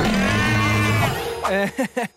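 Cartoon crab giving one loud, low, drawn-out yell, rising and falling in pitch, lasting about a second. A man's voice begins to speak near the end.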